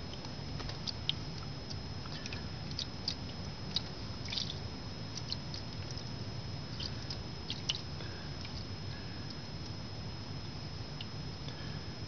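Water pouring in a steady stream from a plastic milk jug into a shallow aluminium tray, with irregular small splashes and clicks.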